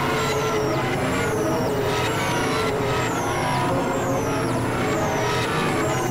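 Experimental electronic noise-drone music from synthesizers: a dense, steady wash of held tones, with a high falling sweep repeating about once a second.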